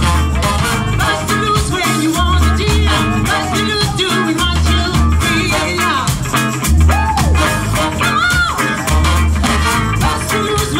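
Live funk brass band playing: a sousaphone bass riff that repeats about every two seconds under drums, horns and guitar, with a woman singing in places.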